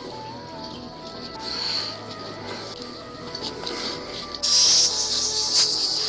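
A spray can hissing in loud short blasts, starting about four and a half seconds in, over background music with steady held tones.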